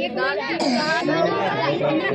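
Children's voices talking over one another in Hindi, one boy answering while others around him chime in.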